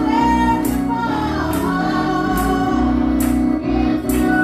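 Women's group singing a gospel song into microphones, with live music behind them and a sharp beat falling about once a second.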